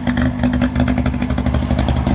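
1958 DKW 3=6's 900 cc three-cylinder two-stroke engine idling steadily with an even, rapid exhaust beat, heard near its twin tailpipes while it warms up.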